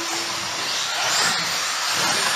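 Electric 4wd RC buggies running on a carpet track, their motors whining as they rise and fall in pitch while the cars accelerate and slow through the corners. A steady tone stops about half a second in.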